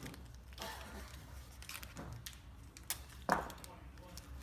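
Blue painter's tape being handled and pulled off its roll, with a few short faint rips and clicks. The sharpest comes about three seconds in.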